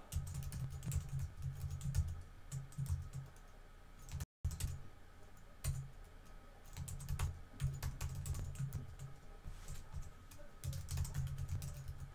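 Computer keyboard typing in quick bursts with short pauses between them. Each keystroke is a sharp click with a low thud. The sound cuts out completely for a moment about four seconds in.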